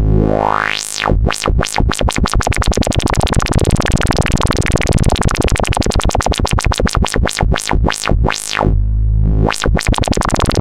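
Sustained modular synthesizer tone through a bandpass filter whose cutoff is swept up and down by the Erica Synths Black LFO. The sweeps start slow, about one a second, speed up into a rapid wobble as the LFO's rate is turned up, then slow back to about one a second near the end.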